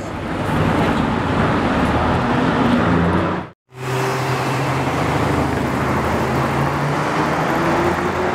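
Mercedes-AMG GT R Pro's twin-turbo V8 running with a low, steady note as the car drives through traffic. The sound cuts out abruptly a little over three and a half seconds in, then the steady low V8 note of a second GT R Pro picks up.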